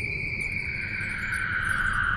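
Sound-design drone from a film soundtrack: a high tone held steady, joined about half a second in by a second tone that slides slowly downward, over a low rumble.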